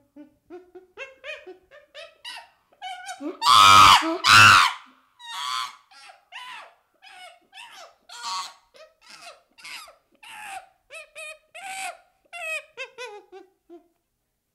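Chimpanzee giving a rapid string of short, high squeaking and hooting calls, about two or three a second, with two loud harsh screams about four seconds in and a few falling calls near the end.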